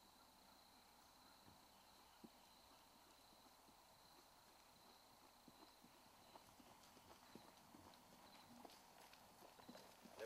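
Faint hoofbeats of a ridden Hanoverian horse on a grassy dirt trail, growing louder and closer together toward the end as the horse approaches.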